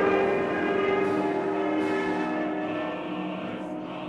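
Intro theme music: sustained chords that slowly fade, with two soft swells of hiss about one and two seconds in.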